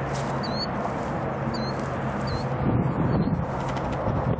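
Short, high bird chirps, about five spread across a few seconds, over a steady low hum.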